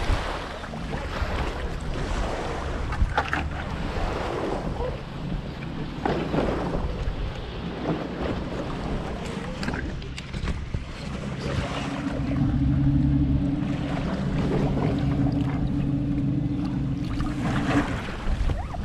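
Footsteps crunching on a gravel and pebble shore, with water splashing and wind on the microphone. About two thirds of the way through, a steady low hum comes in and continues.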